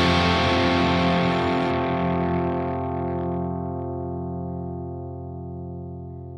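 Electric guitar chord from a Gibson Les Paul through an Orange OR15 tube amp, ringing out after the last strum and fading slowly.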